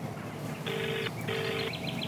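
Telephone ringing tone heard through a phone: one double ring, two short identical rings close together, about a second in, as a call goes through.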